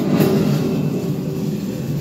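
A low, steady rumble from an immersive exhibit's soundtrack, starting abruptly.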